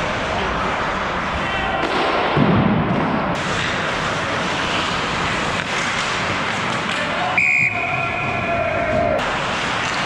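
Ice hockey game heard from a skating referee's helmet: a steady rush of skating and air over the microphone, a thump about two and a half seconds in, and a short high tone about seven and a half seconds in.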